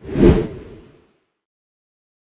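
A single whoosh sound effect for an animated logo reveal. It swells suddenly and dies away within about a second.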